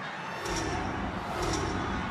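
Steady crowd noise from the large crowd in Times Square: a dense wash of many voices with no single sound standing out.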